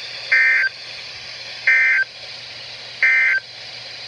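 Three short bursts of Emergency Alert System data tones, the end-of-message signal that closes the alert, played through the speaker of a Midland NOAA weather radio about a second apart over a steady radio hiss.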